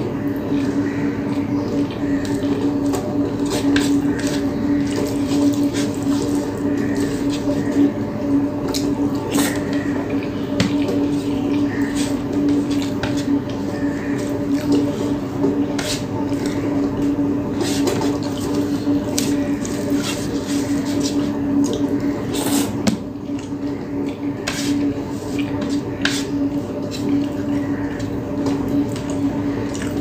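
Close-miked eating sounds: chewing of rice and fish curry eaten by hand, with irregular wet smacks, clicks and squishes of mouth and fingers. Under them runs a steady low hum.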